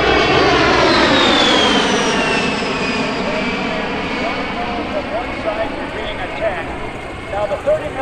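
A-10 Thunderbolt II's twin TF34 turbofan engines on a low pass: a loud jet whine that falls in pitch about a second in as the aircraft passes and climbs away, then fades.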